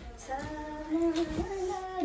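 A child singing in long held notes that waver up and down.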